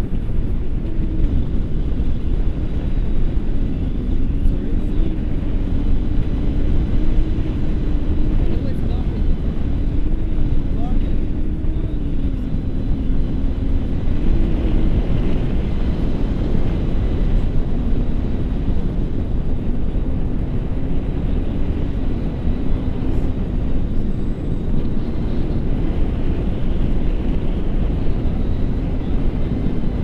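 Airflow buffeting the action camera's microphone in flight under a tandem paraglider: a steady, loud rush of wind noise, with a faint wavering tone drifting up and down through it.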